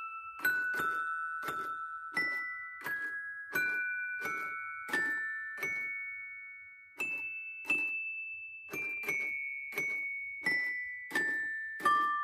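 Mr. Christmas Santa's Musical Toy Chest, its figures' mallets striking tuned chime bars one note at a time to play a slow Christmas tune. Each strike starts with a light knock, and the notes ring on and overlap, with a short pause about halfway through.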